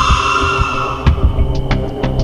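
Eerie horror-style soundtrack: a low throbbing pulse under a rushing, airy drone that fades out about a second in, followed by a few sharp clicks.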